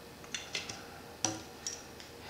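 A handful of short, light clicks and taps as a ½-inch CPVC coupling is worked onto the end of a copper tube, each with a brief metallic ring; the loudest comes a little over a second in.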